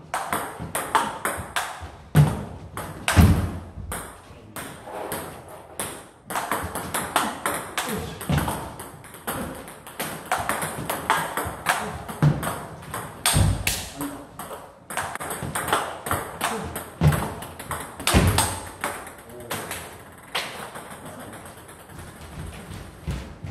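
Table tennis rally: the celluloid-type plastic ball clicks off rubber-faced bats, one of them faced with Yasaka Rakza XX for chopping, and ticks on the table top in quick, continuous exchanges. A few heavier low thuds are mixed in, one every few seconds.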